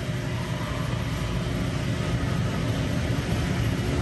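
Steady rushing hum of shop machinery running continuously, heaviest in the low end, with no single event standing out.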